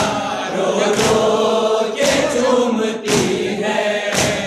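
Group of male voices chanting a noha together, with a sharp beat about once a second from matam, the rhythmic chest-beating that keeps time with the lament.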